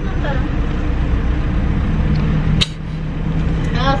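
Steady low rumble and hiss inside a car's cabin from the idling car, with a single sharp click a little past halfway through.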